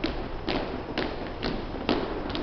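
A platoon's marching footsteps striking a hardwood gym floor in unison, about two steps a second in steady cadence.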